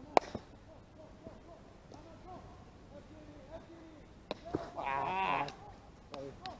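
A baseball bat hitting a pitched ball once, a single sharp crack just after the start. Near the end a wavering high call lasts about a second.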